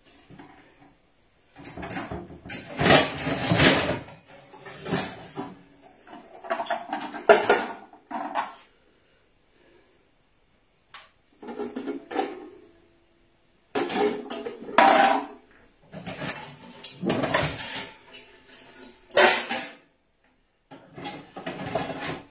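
Metal pots and pans clanking and clattering as they are taken out of a low kitchen cupboard and set down on a tiled floor. The sound comes in about eight short rounds of clatter with brief quiet gaps between them.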